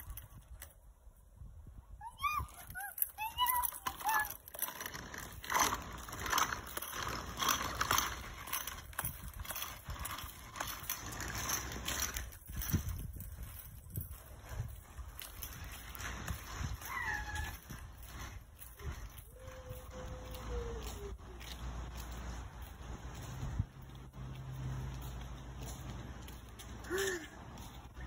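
A child's small plastic three-wheeled kick scooter rolling and rattling over asphalt as it is pushed along, with a few short high gliding chirps or squeaks now and then.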